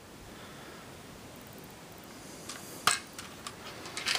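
Quiet room tone with a few faint handling clicks and one sharper click a little before three seconds in, as the plastic brick model or the camera is moved.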